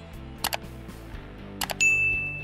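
Subscribe-button sound effects: a mouse double click about half a second in, another near the end, then a single bright notification ding that rings on, over quiet background music.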